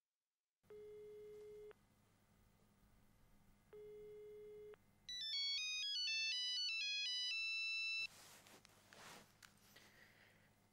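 Telephone tones: two steady one-second beeps of a ringback tone about three seconds apart, then a louder electronic mobile-phone ringtone of quick stepping beeped notes for about three seconds that cuts off suddenly. A soft rustle follows.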